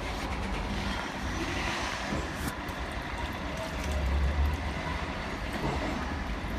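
Steady rumble of city street traffic, with a vehicle passing and swelling louder about four seconds in.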